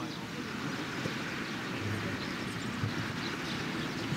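Faint, indistinct voices of a group of football players over a steady low rumble of outdoor background noise.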